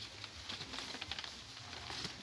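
Dry cipó vine strands rustling and clicking against each other as they are woven by hand into a basket, a run of small irregular clicks.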